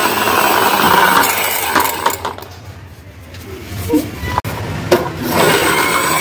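Plastic pull-back toy car's wind-up gear motor whirring as the car runs across a stone-chip floor, fading in the middle and picking up again near the end. A sharp click comes about four and a half seconds in.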